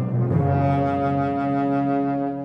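Orchestra with an alto saxophone soloist playing a contemporary concert piece: a low, brass-heavy chord changes about half a second in to a long held chord.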